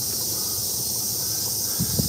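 Insects calling in a steady, high-pitched chorus, with a brief low thump near the end.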